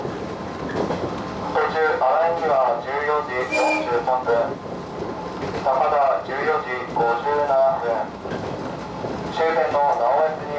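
115-series electric train running along the line, heard from the driving cab, under an on-board Japanese announcement over the speaker giving the stops and the arrival times at Takada and Naoetsu; the announcement comes in three spoken stretches.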